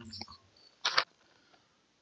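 A quiet room with one brief, soft noise about a second in.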